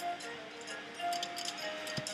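Online video slot's reel-spin sound effects: a few short electronic tones over light, rapid clicking ticks, fairly quiet.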